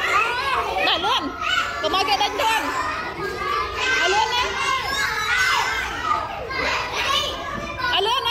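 Many young children's voices at once, talking and calling out over one another without a break.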